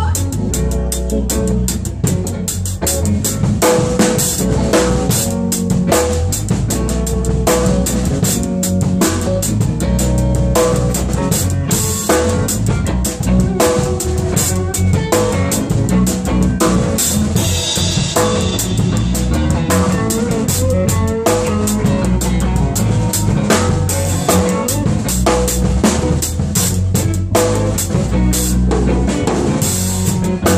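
Drum kit played in a steady, dense groove with cymbals, over the rest of the band in a live jam.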